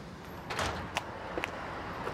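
Quiet street background with three short, light clicks about half a second apart.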